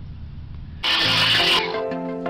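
Quiet outdoor background. About a second in, a short loud burst of hissing noise leads into background music with steady pitched notes.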